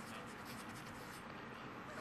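A pause in speech: quiet, steady background hiss of a meeting-room microphone feed, with a few faint ticks.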